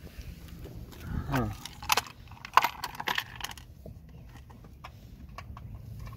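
Several sharp clicks and clinks of a flathead screwdriver against the bare metal floor of a car, the loudest about two and a half seconds in, then a few faint ticks.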